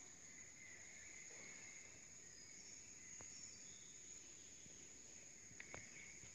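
Near silence: faint woodland ambience with a steady high hiss and a few soft clicks near the end.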